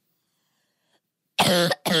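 A woman coughs twice in quick succession, about a second and a half in.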